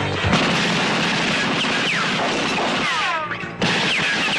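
Action-film soundtrack: a dense, continuous wash of gunfire-like noise with several falling whistles, mixed with music. It cuts out abruptly about three and a half seconds in, then comes back.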